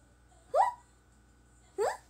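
A young woman's voice making two short, high, wordless squeaks that rise sharply in pitch, about a second apart.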